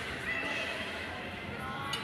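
High-pitched shouting voices in an ice hockey arena, with one sharp, slightly rising call about half a second in.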